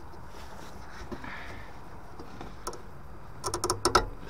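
The clip of a Vaillant ecoTEC Pro's flow NTC sensor being pulled off its copper flow pipe: a single click, then a quick run of sharp clicks and rattles near the end as it comes away.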